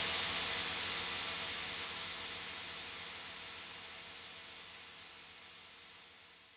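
The fading tail at the end of a tech house track: a hissing white-noise wash with faint steady low tones, dying away evenly.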